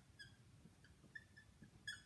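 Faint squeaks of a dry-erase marker writing on a whiteboard, a few short squeals, the last near the end a little louder, over a quiet room.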